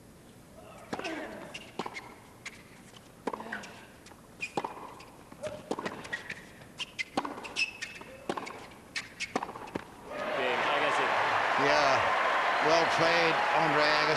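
Tennis rally: sharp racket strikes and ball bounces at irregular intervals, with players' grunts, for about nine seconds. About ten seconds in, the point ends and a large stadium crowd breaks into loud cheering and applause.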